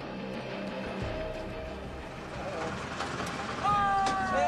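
A van's engine running low and steady, with a man's voice calling out loudly near the end.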